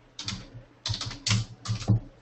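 Typing on a computer keyboard: four quick bursts of keystrokes.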